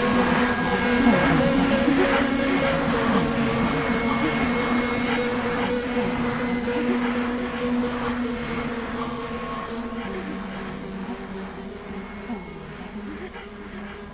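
Dark electronic music: a dense, buzzing drone with steady low tones and slowly gliding high tones, fading gradually; the lowest tone shifts down about ten seconds in.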